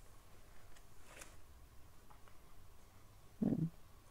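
Buttermilk pouring faintly from a plastic pouch into a bowl of semolina, with a brief, louder low sound near the end as the pouch empties.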